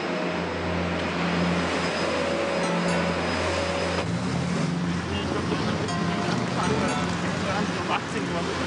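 Backpack vacuum cleaner running with a steady motor hum and rushing airflow, then at about four seconds a change to street ambience with traffic.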